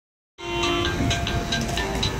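Toy electronic keyboard sounding, with held electronic tones and a quick repeating percussive tick over them, coming in a moment in.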